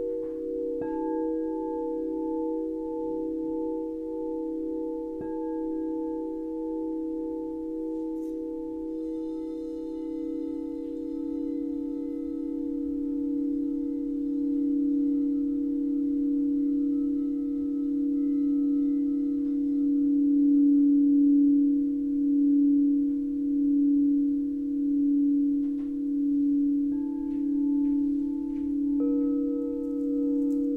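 Quartz crystal singing bowls ringing together in long, overlapping low tones that waver in a slow pulse. Fresh tones join at a few points, and a high bright shimmer rings out about nine seconds in. The sound swells louder in the second half.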